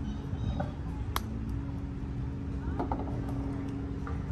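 One sharp click of a mini-golf putter striking the ball about a second in, with a few faint ticks later, over a steady low hum.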